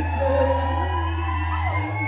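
Live band music in a brief instrumental gap: a held bass note that steps up in pitch near the end, with gliding high tones over it.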